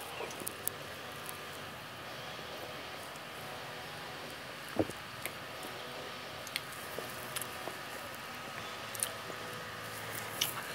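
A man drinking beer from a glass bottle and swallowing: faint mouth and swallowing sounds over a steady hiss of room noise. Scattered small clicks run through it, with a sharper one about five seconds in.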